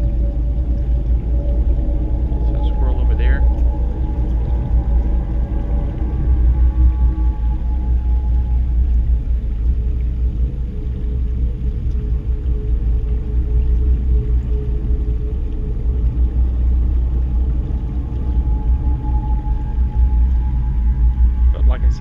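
Wind buffeting an outdoor microphone: a loud, rough low rumble that runs on steadily. Faint held tones sit above it, and there is a brief chirp about three seconds in.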